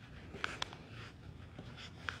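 Faint rustling and a few small sharp clicks, the loudest two about half a second in, from something being handled close to a lectern microphone.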